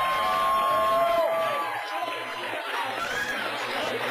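A crowd cheering, with long high whoops over the first half, then easing to lower cheering and chatter.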